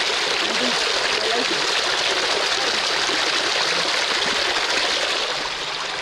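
Stream water pouring over a rock in a small waterfall, a steady rushing splash with no break.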